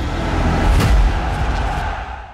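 Cinematic logo-sting sound effect: a rushing swell over a deep rumble, with a boom-like hit a little under a second in, beginning to fade near the end.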